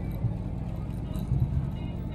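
Low, steady rumble of motorcycle engines on the street, swelling briefly a couple of times.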